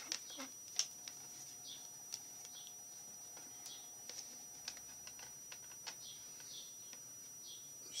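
Faint, scattered light clicks and taps of small objects being handled on a desk, over a steady high-pitched electronic whine, with a few faint short chirps.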